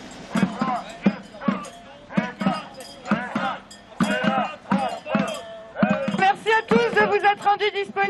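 Marchers banging on metal cooking pots in a steady beat of about two strikes a second, with group voices chanting along over the top.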